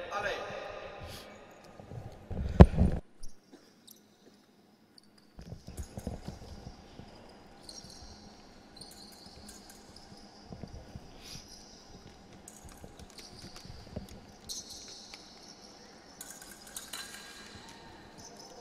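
Fencers' footwork on the piste: shoes stepping and squeaking, with scattered light clicks and a loud thump about two and a half seconds in. The sound drops out for about two seconds just after the thump.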